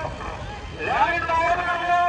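A man's voice calling out in long, drawn-out syllables, starting about a second in, over a low rumble of a tractor engine.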